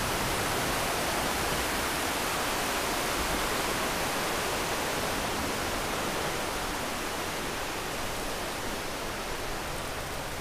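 Steady rushing noise of a moving e-bike ride over a wet bridge deck above a flowing river, with wind, wet tyres and running water blended into one even hiss. It eases a little after about six seconds.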